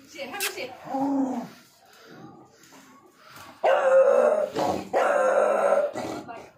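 Beagle barking: a couple of shorter calls in the first second and a half, then two long, loud bays of about a second each in the second half.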